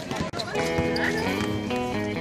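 Game sound with voices cuts off abruptly about a third of a second in, and background music with held notes takes over.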